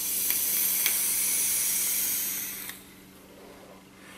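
Box-mod e-cigarette drawn on in one long pull: the coil sizzles and air hisses through the tank for nearly three seconds, then stops, followed by a softer exhale.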